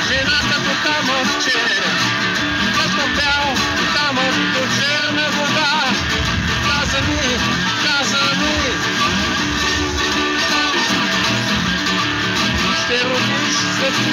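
Nylon-string acoustic guitar playing a song, with a man's voice singing over it.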